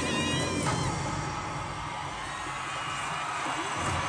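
Arena concert crowd cheering over loud music, with high wavering shrieks from fans in the first second.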